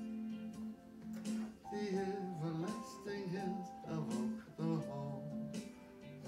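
Electronic keyboard playing an instrumental passage of a slow western song: a moving melody over held low notes.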